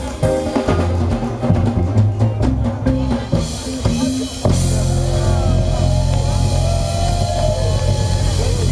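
Live reggae band playing, drum kit and bass guitar driving the beat. About four and a half seconds in the drumming stops and a held low bass note rings on under a voice gliding between notes.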